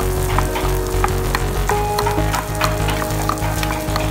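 Okonomiyaki batter and shredded cabbage being stirred in a metal bowl, with frequent irregular sharp clicks, over a steady sizzle of meat frying on a hot iron teppan griddle.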